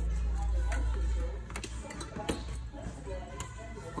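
A low rumble for the first couple of seconds, then a few light clicks and knocks as the plastic parts of a canister wet-and-dry vacuum are handled. The vacuum's motor is not running.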